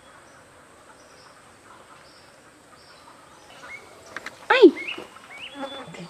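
Quiet farmyard ambience with short faint high chirps. About four and a half seconds in there is one loud short call with a bending pitch, followed by a few rising whistled bird chirps.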